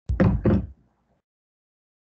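A faint click, then two dull knocks about a third of a second apart, loud and over within a second.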